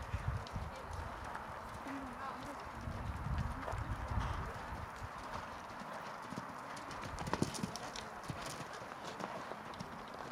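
A horse's hoofbeats as it canters over a sand arena under a rider.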